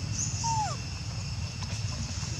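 Outdoor forest background with a steady high-pitched drone and a few brief high chirps, plus one short call that falls in pitch about half a second in.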